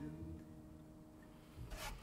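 Final chord of a Yamaha acoustic guitar fading away, then a brief rub near the end.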